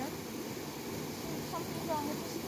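Steady rushing of stream water pouring through a concrete weir channel.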